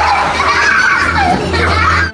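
Several young children's voices chattering and calling out over one another, the hubbub of children at play, over a steady low hum.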